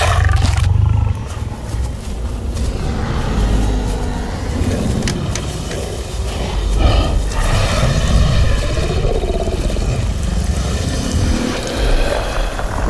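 Film creature sound design: monster growls and roars over a low, rumbling music score, with a heavy low rumble in the first second.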